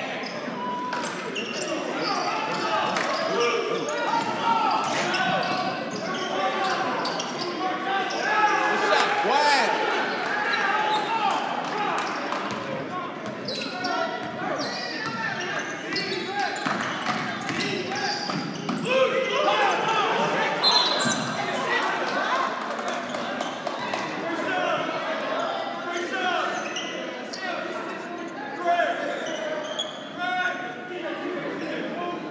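Basketball being dribbled on a hardwood gym court, with players' and spectators' voices echoing through the large gym.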